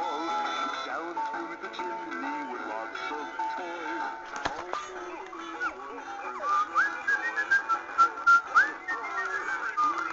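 Tinny recorded music from an animated dancing Santa Claus figure's small built-in speaker, with a whistled melody. From about six and a half seconds in, a run of short rising whistle notes is the loudest part.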